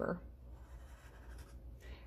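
Sharpie permanent marker drawing a short curved line on paper: a faint, soft scratch of the felt tip on the paper.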